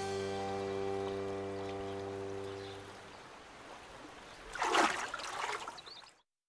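A held music chord fading out over the first three seconds, then a short splash of a Eurasian otter diving, about four and a half seconds in.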